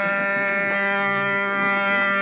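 One long instrumental note held steady in pitch, full of overtones.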